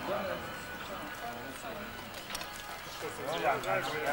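Indistinct voices of people talking, with brief spoken phrases near the start and again in the second half.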